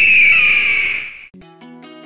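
A loud bird-of-prey scream sound effect, one long screech sliding slowly down in pitch, cutting off about a second and a half in. Music with plucked notes starts right after.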